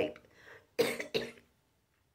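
A woman coughing twice in quick succession about a second in, clearing a sip of drink that went down the wrong way.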